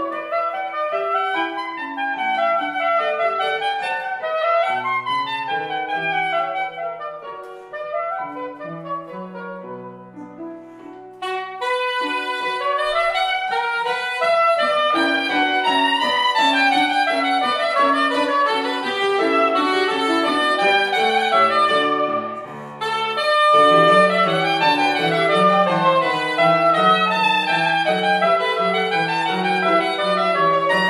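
Soprano saxophone and grand piano playing a classical piece together. The music thins and softens around eight to ten seconds in, comes back louder and fuller about eleven seconds in, and breaks briefly about two-thirds of the way through.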